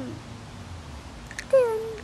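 A young child's short high-pitched vocal cry, falling slightly in pitch, about one and a half seconds in; before it only faint background.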